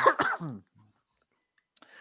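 A person coughing: two short coughs in the first half second.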